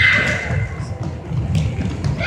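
Children's running footsteps thudding irregularly on a wooden gym floor, with a brief high tone at the very start and a sharp click about one and a half seconds in.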